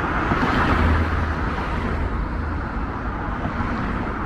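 Road traffic on a multi-lane street: a steady wash of engine and tyre noise with a low rumble, swelling briefly as a vehicle passes about a second in.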